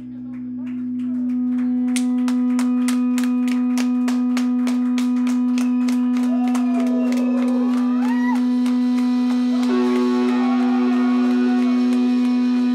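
Funeral/drone doom band playing live on electric guitars and bass: one loud sustained droning note swells up over the first second or so. A steady pulse of about four beats a second then comes in, with wavering, gliding tones above it.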